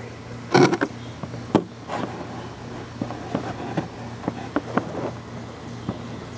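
A PVC canister being picked up and tipped: a cluster of sharp clicks and knocks just under a second in and another knock a little later, then scattered light ticks as sand and debris spill out, over a steady low hum.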